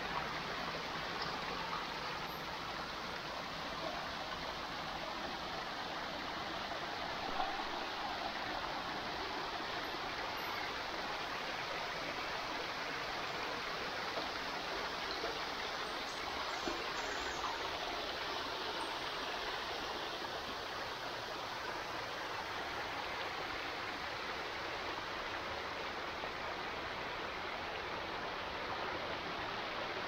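Small creek waterfall: water spilling over stepped rock ledges into a shallow pool, a steady, even rush of falling and splashing water.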